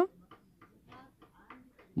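Faint, irregular ticks, about four a second, in a quiet pause.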